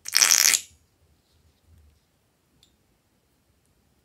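A filled novelty balloon squeezed so that its contents spurt out of the neck with air in one loud, raspy burst of about half a second; a couple of faint small sounds follow.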